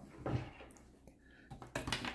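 Faint handling noise from airsoft AK rifles on a wooden table: a few soft knocks and clatters, mostly near the end as a rifle and its sling are picked up.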